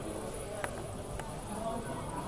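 Indistinct background chatter of many people, with two sharp clicks about half a second apart near the middle.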